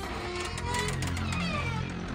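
Background music with steady held low notes.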